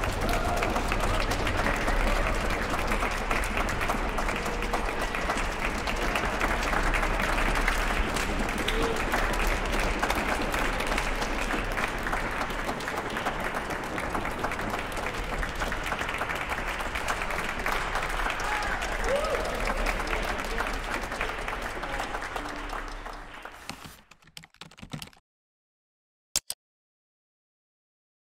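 Concert hall audience applauding steadily, then fading out near the end.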